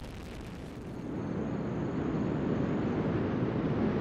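Engine noise of a Delta IV Heavy rocket's three RS-68 engines at full thrust during ascent. It grows louder about a second in, then holds steady.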